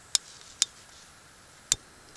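Piezo igniter on a backpacking canister stove clicking three times, sharp single clicks spaced unevenly, as it is sparked to light. The butane-propane canister would not start in the cold and is being warmed in a tray of water.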